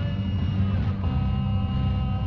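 Film soundtrack music: a deep, steady rumble with a few sustained high notes held over it.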